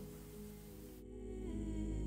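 Soft background music with a sustained low drone and a slow, gliding melody line, growing louder through the second half.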